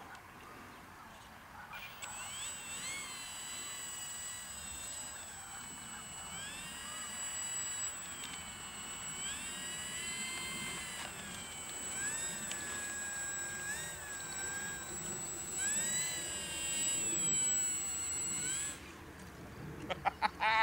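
Electric motor and propeller of an 800 mm H-King Hawker Tempest RC warbird whining as the plane taxis, the whine rising and falling in pitch with the throttle over a steady high whistle. It cuts off abruptly near the end.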